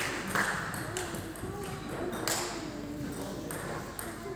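Table tennis balls clicking sharply and irregularly off bats and tables, a handful of separate hits, with voices talking in a large hall.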